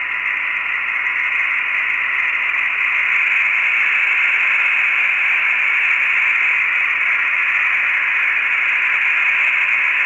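Steady hiss of radio static on the Apollo 17 air-to-ground voice loop, with the channel open and nobody talking. It is thin and mid-pitched, with a faint steady tone beneath it.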